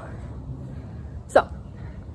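A single short vocal sound from a woman, like a hiccup or a quick gulp of breath, about a second and a half in, over a steady low background rumble.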